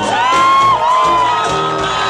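Live band playing, with a loud high note over it that swoops up at the start, dips briefly, then is held steady and higher from about a second and a half in.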